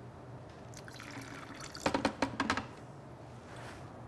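Brown rice vinegar spooned into a food processor bowl, with a few short drips and clicks around two seconds in.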